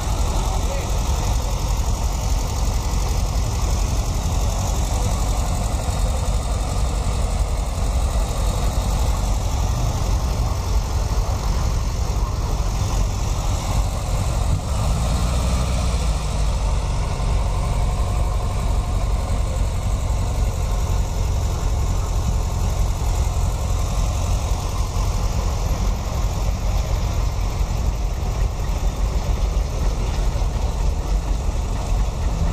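Classic car engines idling and moving off slowly, a steady low engine rumble, with people talking in the background.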